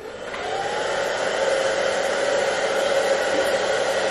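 Handheld hair dryer switched on, building up over about the first second and then running steadily with a whir.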